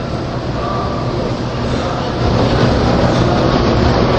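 Steady low rumbling noise with a hiss over it, growing louder about two seconds in.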